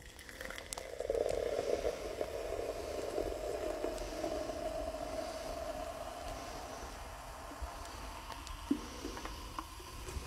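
Pepsi poured from an aluminium can into a glass mason jar: a steady stream of fizzy liquid splashing into the jar for about eight seconds, fullest in the first few seconds and thinning out before it stops, with a couple of light clicks near the end.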